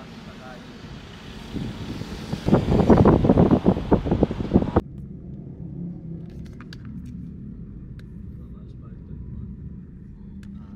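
Wind buffeting the microphone at an open car window, gusting loudest about three to five seconds in and then cutting off suddenly. After that comes the steady low rumble of the moving car heard inside the cabin, with a few faint clicks.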